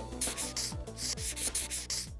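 Paint-brush stroke sound effect: about four quick, dry scrubbing strokes, each one a hissy swish.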